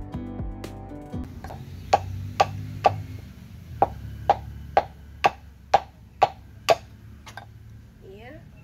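Wooden pestle pounding dried omena fish in a small wooden mortar: sharp knocks about twice a second, with a short pause a little after three seconds in. Music plays for the first second.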